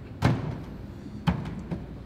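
A rope of hand-pulled noodle dough is slapped down onto a metal-topped worktable. There is a loud thud about a quarter second in, a second thud about a second later, and a lighter one just after.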